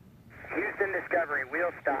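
A man's voice over a narrow, tinny air-to-ground radio link, starting about a third of a second in, calling "wheels stop" to signal that the shuttle has come to a full stop on the runway.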